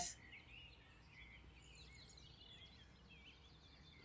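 Near silence with faint birdsong: small, high chirps and twitters.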